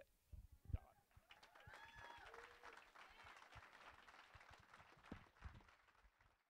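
Faint audience applause with a few voices calling out, dying away near the end.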